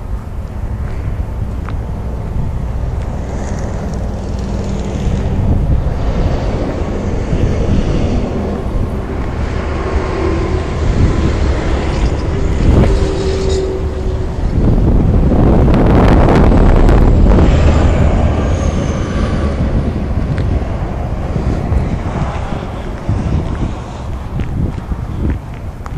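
Wind buffeting the microphone, a loud, steady low rumble that swells for a few seconds in the second half.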